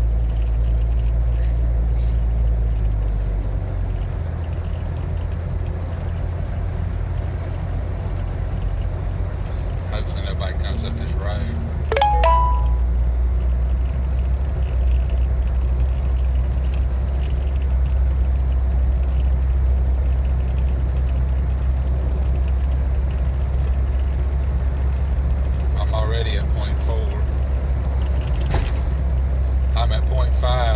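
Jeep Wrangler engine and road noise heard from inside the cabin while driving, a steady low drone. The engine note drops about four seconds in and rises again with a step in loudness about twelve seconds in, with a few light clicks just before.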